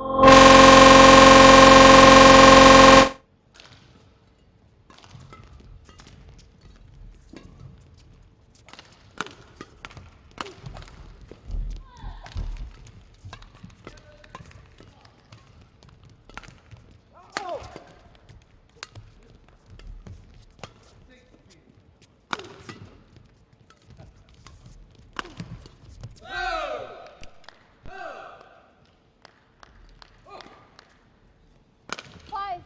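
A loud, steady buzzing tone for about three seconds at the start, then a badminton doubles rally: sharp racket hits on the shuttlecock and footwork on the court, with two short shouts near the end.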